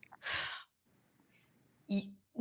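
A woman's short sigh, a breath lasting about a third of a second, with a faint mouth click just before it. Her voice starts again near the end.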